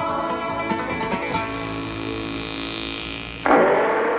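Closing bars of a banjo-led country-style TV theme tune, the plucked notes settling into a held chord. About three and a half seconds in, a sudden loud, rough sound breaks in over the music and then starts to fade.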